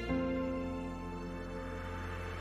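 Slow background music: soft, sustained chords, with a change of chord just after the start.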